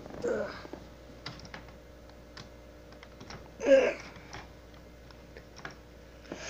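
Scattered light clicks and taps of objects being handled at close range, with a sleepy 'uh' about midway.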